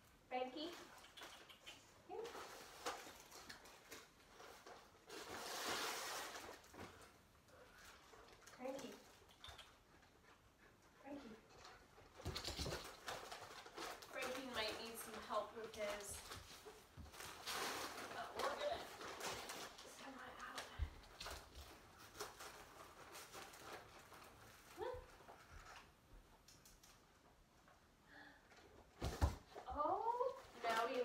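Wrapping and tissue paper rustling and tearing in several bursts as a dog pulls at a present, with a few short pitched sounds in between.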